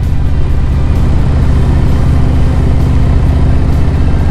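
2020 Harley-Davidson Low Rider S's Milwaukee-Eight V-twin running loud and steady at a cruise through a Vance & Hines Big Radius exhaust, a deep even note made of rapid firing pulses.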